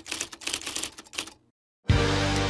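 A rapid, uneven run of sharp mechanical clicks, used as an edit transition effect, stopping about one and a half seconds in; music starts right at the end.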